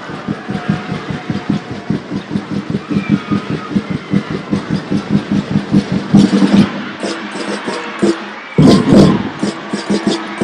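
Drums beating a steady rhythm of about four strikes a second, with louder bursts about six and nine seconds in.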